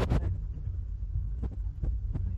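A low, uneven throbbing rumble with a few faint clicks.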